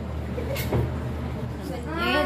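Faint, indistinct voices of people in a room over a steady low hum, with one brief sharp knock less than a second in.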